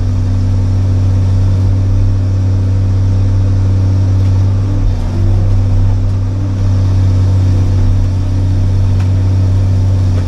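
John Deere 690C excavator's diesel engine running steadily at working speed while the boom and bucket work a tree stump, heard from inside the cab.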